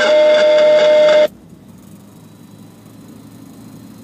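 Galaxy radio's speaker playing a received signal: a steady whistle tone over loud static that cuts off suddenly about a second in, leaving a faint hiss.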